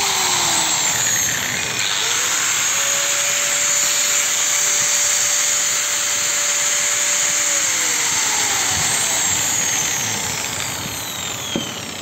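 Stanley STGS6-100 4-inch angle grinder running unloaded at full speed, a test run after its armature bearing and carbon brushes were replaced. About ten seconds in it is switched off and winds down, its pitch falling.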